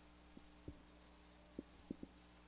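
Near silence: a steady low hum with four faint, short low thumps.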